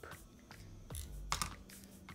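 A few faint clicks and light rustles from fingers and nails working through curly, mousse-set hair, the sharpest clicks about a second in.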